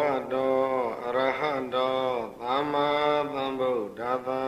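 A Buddhist monk's voice chanting in a slow, sustained melodic intonation, holding long notes with gentle rises and falls in pitch over several drawn-out phrases, typical of Pali verse recitation within a Burmese Dhamma sermon.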